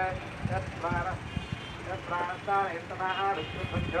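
People talking in short phrases over a low, irregular rumble.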